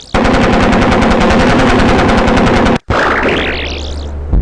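Machine-gun sound effect for a WWI heavy machine gun: one long burst of rapid, evenly spaced fire, about eleven shots a second, lasting nearly three seconds and cutting off sharply. A rising whistling sweep follows near the end.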